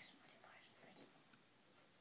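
Near silence: room tone, with faint whispering in the first second.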